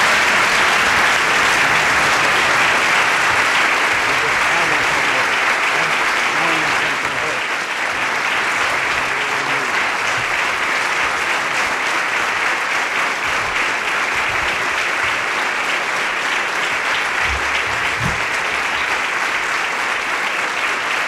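Audience applauding steadily in a large room, easing slightly after about seven seconds.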